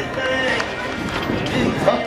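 Voices with music playing behind them. A shouted voice rises near the end.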